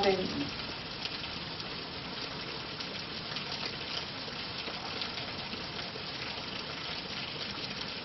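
Steady background hiss with no distinct events, the noise floor of a room recording.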